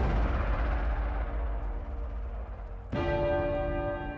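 Trailer sound-design hits: a deep, bell-like toll over a heavy low boom. The first rings out and slowly decays, and a second strike lands about three seconds in.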